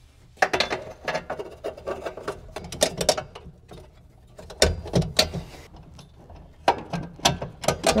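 Hand ratchet clicking in several quick runs as the brake pedal's pivot bolt and lock nut are tightened, with a heavier metal clunk about halfway through.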